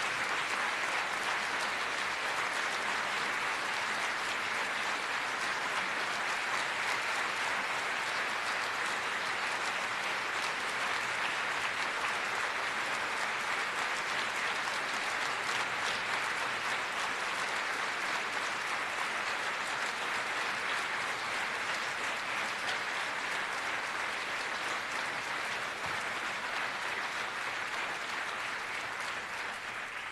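A large audience giving a standing ovation: many people clapping together in a dense, steady applause that eases a little near the end.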